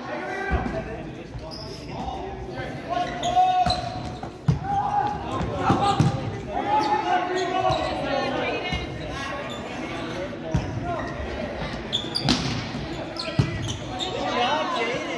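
Volleyball rally in a large gym: several sharp, irregular smacks of the ball being hit, echoing in the hall, with voices calling out around the court.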